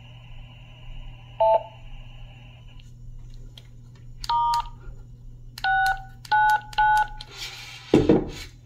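DTMF tones from a Retevis handheld radio's keypad as a command is keyed in. A short beep comes first, then four separate key tones, the last three in quick succession. A brief hiss of radio noise follows near the end, over a steady low hum.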